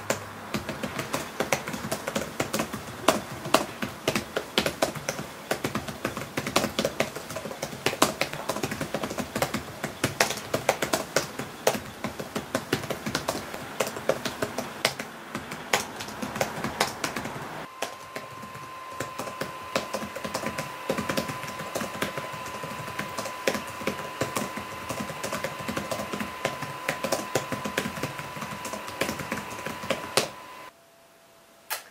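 Rapid, irregular keystrokes on a laptop keyboard as a text is typed. Just past halfway, a faint steady high tone comes in under the clicking.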